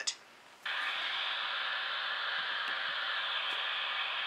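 Steady static-like hiss from a smartphone's speaker, starting abruptly about half a second in and holding level: the spirit-board game app's background sound while it waits for the next letter.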